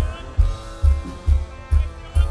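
Live rock band playing through amplification: electric guitars and bass over a steady kick-drum beat of a little over two beats a second.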